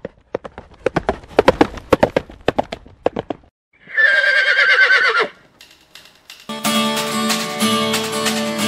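Horse hooves clattering in a quick, uneven run of hoofbeats, followed by one long horse whinny with a wavering pitch. Music starts near the end.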